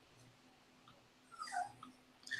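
A small dog whimpering faintly, a few short high whines starting about one and a half seconds in.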